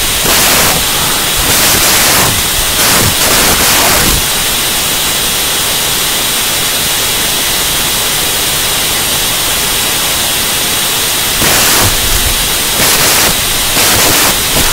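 Loud electronic static hiss from the audio feed, steady throughout. It swells louder in several stretches, a few at the start and again near the end.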